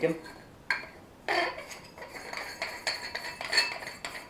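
Squeaking and rubbing as a snug cover is twisted and pushed onto the end of a rifle scope, in a run of short squeaks.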